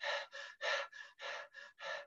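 A man imitating rapid breathing with short, quick breaths, about four a second, to demonstrate the fast breathing of a pulmonary embolism patient.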